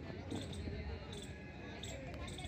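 Outdoor ambience: a low steady rumble with faint distant voices and a few soft knocks.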